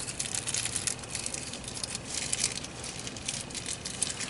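Paper rustling and crinkling as pages are handled and turned, in flurries of quick, sharp crackles.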